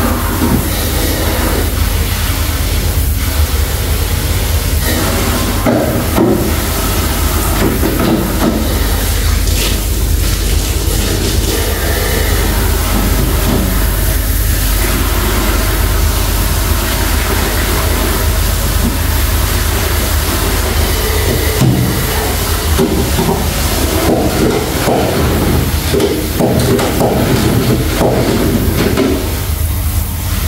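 Water spraying from a handheld shower head onto a tiled bathroom floor, a steady rush of water, with a spin mop working over the wet tiles.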